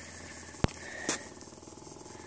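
Quiet outdoor background with a steady low hum, broken by one sharp click about two-thirds of a second in and a brief faint sound about a second in.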